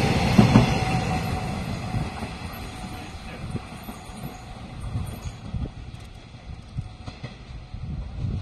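Taiwan Railways EMU500 electric commuter train passing at speed, the rush of its last car fading over the first few seconds as the train recedes down the line, leaving a faint rumble with a few low knocks.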